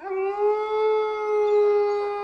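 A single long howl, laid over the title card as a sound effect. It starts suddenly, rises a little in pitch and then holds steady.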